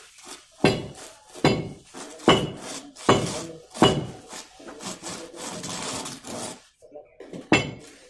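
Steel plastering trowel clinking and scraping against metal while cement mortar is worked onto a ceiling beam: five sharp clinks less than a second apart, then a longer scrape, then one more clink near the end.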